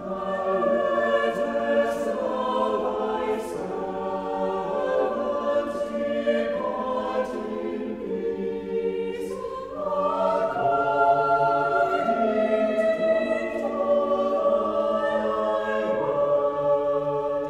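Church choir singing sacred choral music in several parts, sustained sung lines with the voices moving together. About ten seconds in, the parts step up in pitch and grow a little louder.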